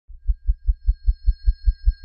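Produced intro sound effect: a run of deep, evenly spaced bass thumps, about five a second, under a faint high steady tone, leading into the show's title sting.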